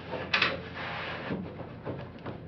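Hand handling the steel swing-down battery mount under the car's nose: a short scrape or clatter about a third of a second in, then a brief rubbing noise and a couple of faint knocks.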